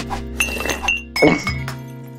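Light metallic clinks with a brief high ring: three quick ones in the first second, then a louder one a little after the middle. They are cartoon sound effects over steady background music.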